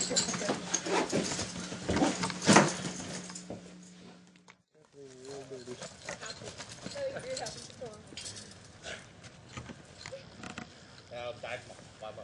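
Hurried rustling, clattering and knocking of belongings being grabbed from a closet and packed, over a steady low hum, with one loud knock about two and a half seconds in. It cuts off abruptly about halfway through. After that come quieter scattered rustles and a few short, wavering voice-like sounds.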